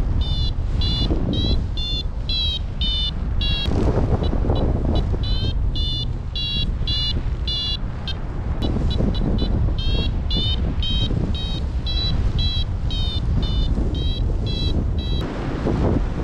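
Paragliding variometer beeping in short high tones, about two a second, the signal of the glider climbing in rising air, over a steady rush of wind on the microphone.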